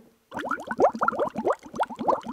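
Slurping sips of hot coffee from a mug: a quick run of rising, gurgling slurps for most of two seconds.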